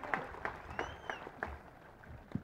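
Audience applause thinning out to scattered, separate claps.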